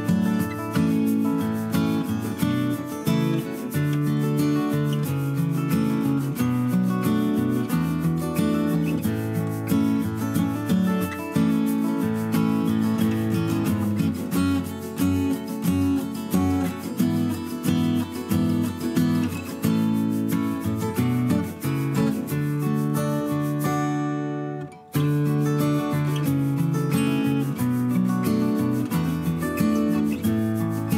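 Background instrumental music with a steady run of quick notes, dropping out briefly for about a second about three-quarters of the way through.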